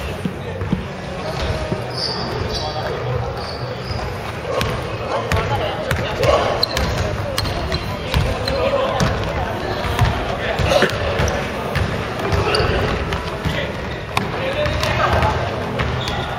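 Basketballs bouncing on a wooden gym floor during a game, many separate thuds, with players' voices in the hall.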